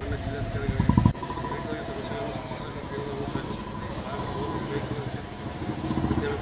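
Outdoor street ambience: a motor vehicle engine running nearby under faint voices. A loud low rumble fills about the first second.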